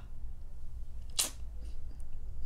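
A pause with a low steady hum, broken about a second in by one short, quick breath.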